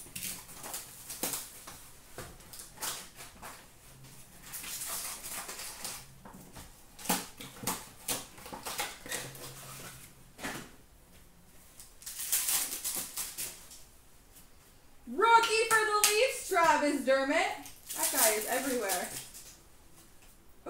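A box of hockey trading cards being opened by hand: foil pack wrappers and cardboard crinkling and tearing in short bursts, with cards clicking as they are handled. A voice speaks over it for the last few seconds.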